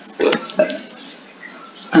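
A man's short throat noise about a quarter second in, then a drawn-out 'uh' starting just before the end.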